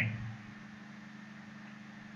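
A steady, quiet low hum: the background drone of the recording setup between spoken sentences. It starts as the last word of a man's voice fades out at the very beginning.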